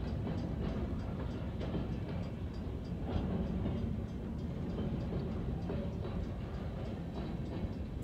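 Freight train of empty trash container cars rolling steadily past a grade crossing, a steady low rumble of wheels on rail with light irregular clicks, heard from inside a car.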